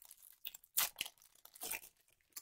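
A Pokémon TCG booster pack's foil wrapper being torn open and crinkled in the hands: a handful of short, sharp rips and rustles.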